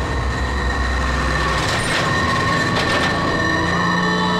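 Heavy container lorry driving past: low engine rumble with road noise and a steady high whine over it. The rumble drops away about one and a half seconds in.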